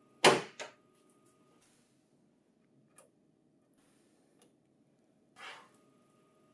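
Network-port cover panel of a Lexmark printer being unclipped and pulled off: a sharp snap just after the start, a smaller snap right after it, then a faint click about three seconds in and a short rustle near the end.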